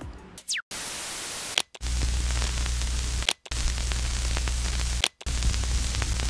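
Old-television static sound effect: blocks of hiss over a steady low hum, cut by short silences about every one and a half seconds, opening with a brief falling whistle.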